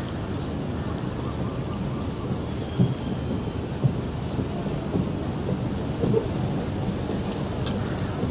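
Steady low rumbling background noise of a large open-air gathering, with a couple of soft knocks about three and four seconds in.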